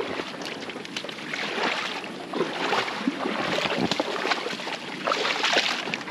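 Splashing and sloshing of feet wading through shallow water over a stony riverbed, in irregular bursts, while an inflatable boat is towed through the water.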